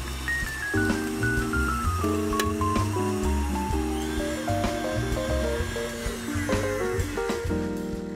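Background music: a melody of short notes stepping down in pitch over a pulsing bass line.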